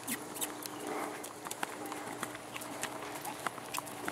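Faint hoofbeats of a horse cantering on sand footing, heard as scattered soft clicks over a low steady hum.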